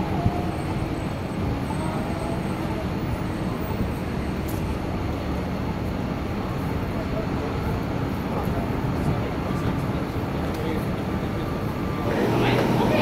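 Busy city street ambience: a steady rumble of road traffic with the voices of passers-by mixed in.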